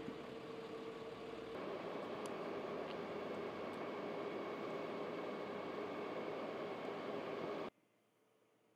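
A vehicle engine idling steadily under outdoor street noise. The sound shifts slightly about a second and a half in, then cuts off abruptly near the end.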